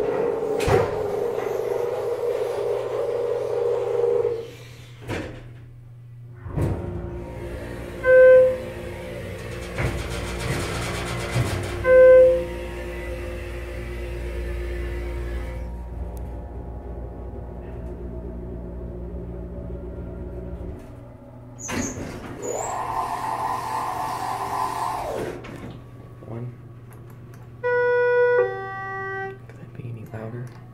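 Schindler hydraulic elevator: the hydraulic pump motor starts about six seconds in and runs with a steady low hum for about fourteen seconds, with two chime dings during the run. Afterwards there is a few seconds of door-operator sound, then a short run of falling tones near the end.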